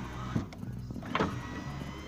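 Car power window motor running as the door glass slides up in its channel, with two short sharp sounds, about half a second and just over a second in.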